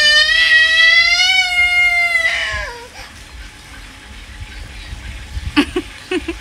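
A toddler crying, one long wail of nearly three seconds that rises slightly and then falls away. She is upset at being stuck in sticky clay mud.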